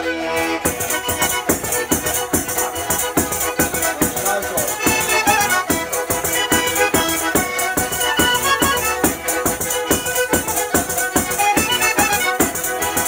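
Calabrian folk music on zampogna bagpipe, bowed lira calabrese and tamburello. A held bagpipe drone opens it; about half a second in, the jingling frame drum sets a quick, even beat under the drone and the melody.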